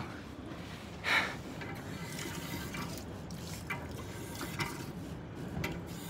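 Push-button public drinking fountain running: a thin stream of water falls from the spout and splashes onto a metal drain grate, with a brief louder sound about a second in.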